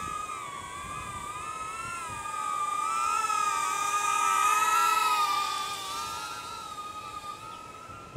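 A DJI Neo mini drone's motors and small ducted propellers whining in flight, a steady high-pitched tone that wavers slightly with throttle. It grows louder a few seconds in, then fades.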